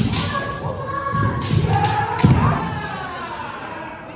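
Kendo bout: fencers' drawn-out kiai shouts, a sharp crack right at the start, and a cluster of knocks and heavy thuds of bare feet stamping on the wooden floor about one and a half to two and a half seconds in, echoing in a large hall.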